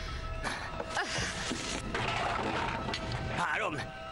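Tense film score with steady held notes under a loud rushing noise that comes in about half a second in and fades after about two seconds; a brief voice sound near the end.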